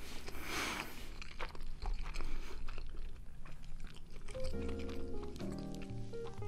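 A person chewing a mouthful of omurice, soft egg omelette over fried rice, close to the microphone, with small wet clicks of the mouth. Background music notes come in about four seconds in.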